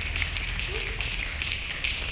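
A group of people snapping their fingers: many quick, irregular snaps overlapping, over a low steady hum.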